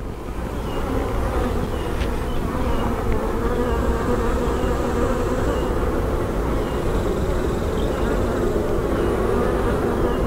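Honeybees buzzing in a steady, continuous hum around an opened hive box as a frame full of bees is lifted out and set back in.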